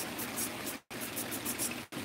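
Steady rush of running water at a garden fish pond, with the sound cutting out briefly twice.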